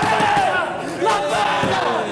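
Men shouting in excited celebration, several voices overlapping in a continuous yell.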